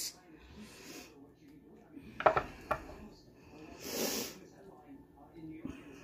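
A metal serving spoon scraping and clinking against a ceramic baking dish and plate, with a couple of sharp clinks a little past two seconds in. An audible breath near four seconds in.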